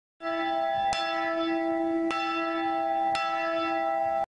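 A bell ringing with a steady, sustained ring, struck again roughly once a second, with three sharp strikes renewing the tone.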